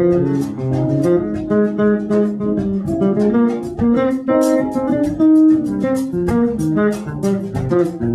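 Live instrumental jazz-fusion trio: electric bass playing a moving line under guitar notes, with a drum kit keeping time in regular cymbal strokes.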